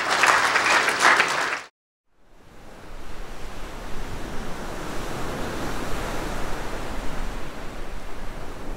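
Audience applauding, cut off abruptly under two seconds in. After a brief silence, a steady wash of ocean-surf sound fades up and holds.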